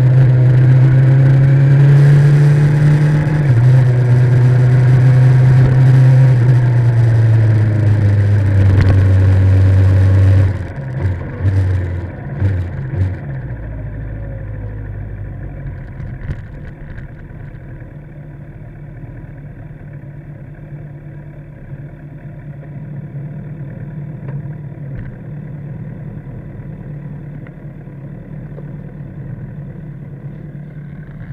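Kawasaki ZX-10R inline-four sportbike engine under way with wind noise on the microphone, its pitch falling as the bike slows. About ten seconds in the sound drops suddenly, a few short throttle blips follow, and the engine then runs quietly at low revs.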